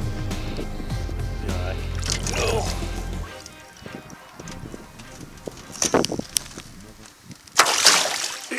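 Background music for about three seconds, cutting off suddenly. Then lake water sloshing against the side of a boat, with a loud splash near the end.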